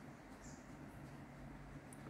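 Near silence: faint room tone with a steady low hum, and a brief faint high squeak about half a second in.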